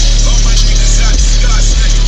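MMATS Juggernaut subwoofers on two 4,000-watt amplifiers playing bass-heavy music at very high volume. A deep bass note holds steadily under the track.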